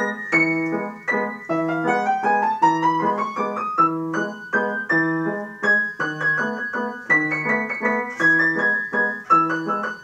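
Upright piano being played: a repeating low accompaniment figure about twice a second under a melody whose notes climb steadily over the first few seconds, then carry on in a busier pattern.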